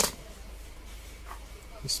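A single sharp click at the start, then faint handling noises as a partly disassembled spinning reel is picked up off the table.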